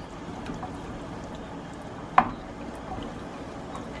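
Wooden spoon stirring thick tomato sauce with ground sausage in a stainless steel pot, a steady stirring sound with one sharp knock about halfway through.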